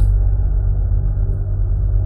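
Low, steady droning background music, a deep rumbling bed with nothing bright or high in it.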